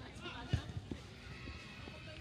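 Footballers' voices calling out across the pitch during play, with a sharp thud about half a second in.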